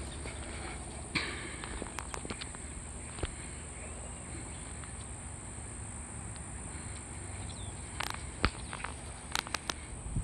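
Outdoor ambience with a steady, high insect drone, broken by scattered light clicks and taps, with a small cluster of them near the end.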